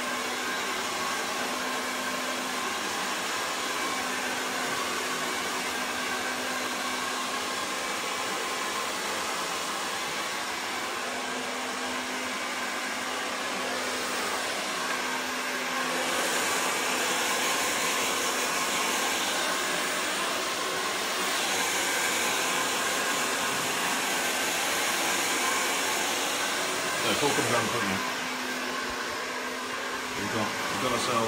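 Handheld hair dryer running steadily while blow-drying hair: an even rush of air with a steady hum underneath. It grows a little louder about halfway through, then eases off shortly before the end.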